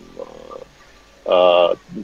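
A man's voice: a faint murmur, then one drawn-out hesitation vowel ('ehh') about a second and a half in, as he searches for his next word.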